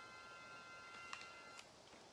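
Faint electronic tone: several pitches held together as one steady chord, cutting off about a second and a half in, with a couple of light clicks near the end.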